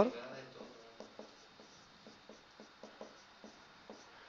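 Marker pen writing on a whiteboard: faint, short, irregular scratches and taps as each stroke is drawn.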